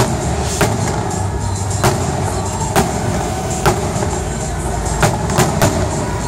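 Aerial fireworks shells bursting overhead in an electronically fired display: about eight sharp bangs, irregularly spaced, over a continuous rumble of further explosions and crackle.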